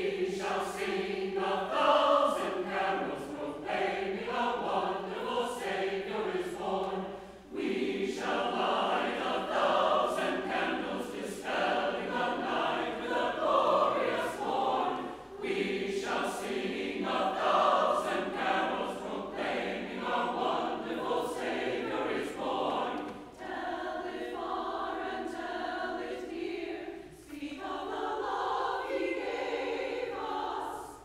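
Mixed church choir singing in long held phrases, with brief breaks between them.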